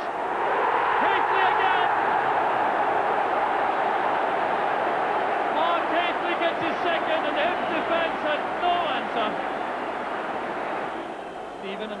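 Football stadium crowd roaring and cheering a goal. The roar swells at once and eases off near the end, with individual shouts and whistles rising above it.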